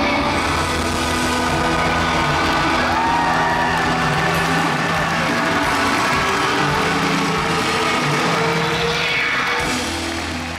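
Live rock band sustaining loud held chords on electric guitar and bass at the end of a song, with an arena crowd cheering over it. The sound starts to fade near the end.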